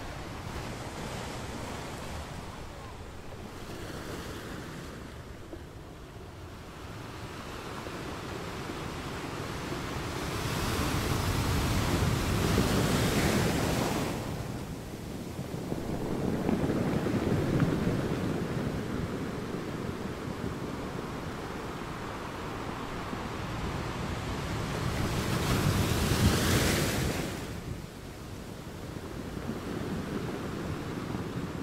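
Ocean surf breaking over a rocky shore: a continuous wash of water that swells into three louder surges as waves crash, about ten, sixteen and twenty-five seconds in.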